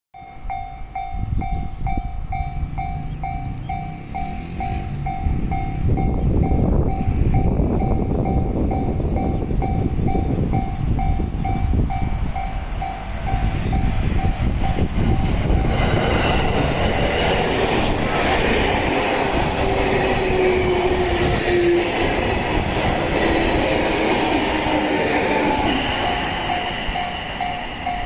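Japanese level-crossing warning bell dinging in a rapid, even rhythm. About halfway through, the bell is drowned out by a six-car 701 series and E721 series electric train running past the crossing on its way into the station. The train's wheels and motors rumble loudly, with a brief falling whine about three quarters of the way through, and the bell comes back through near the end.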